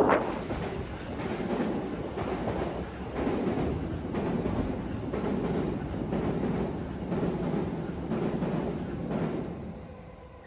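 A train running over the steel elevated railway viaduct overhead: a steady rumble that eases off near the end.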